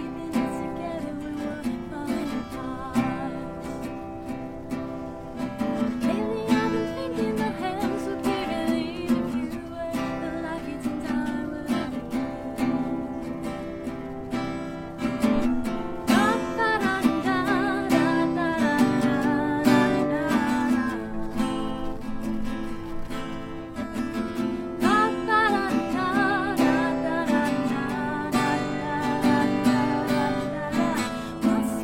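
Live solo acoustic song: a woman singing over a strummed acoustic guitar. The voice stands out most about halfway through and again near the end.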